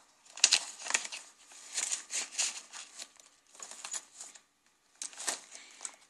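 Paper rustling and sliding in several short bursts as hands handle aged paper tags and envelope pockets in a junk journal.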